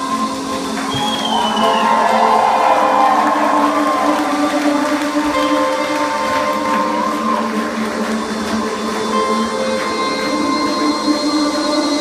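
Live post-rock band in a quiet passage without drums or bass: electric guitars and keyboards hold layered sustained tones. A wavering line glides up and down in pitch during the first half.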